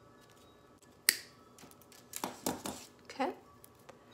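Wire cutters snipping the tail off a plastic zip tie: one sharp click about a second in. A few softer clicks and rustles follow as the mesh-wrapped wire frame is handled.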